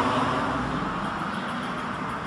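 A road vehicle passing on the street, its steady running noise slowly fading away.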